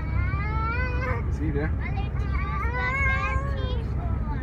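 A high-pitched voice singing in long, drawn-out gliding notes over the steady low rumble of road noise inside a moving car.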